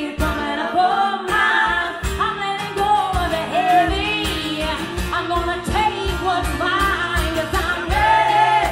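Live acoustic pop song: a woman sings the lead with a second woman's backing vocal, over strummed acoustic guitar and a steady percussion beat.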